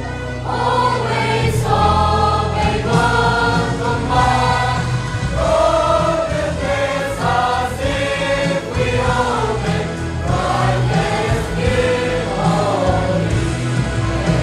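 A school choir of mixed boys' and girls' voices singing a hymn-like song together, moving through sustained notes, with a steady low tone underneath.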